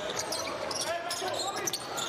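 Basketball dribbled on a hardwood court during play: several sharp bounces over steady arena background noise.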